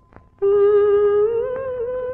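A woman's singing voice humming a long held note as part of a film song, coming in about half a second in after a brief pause and lifting slightly in pitch near the end.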